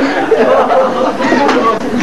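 Speech: people's voices talking, with no other clear sound.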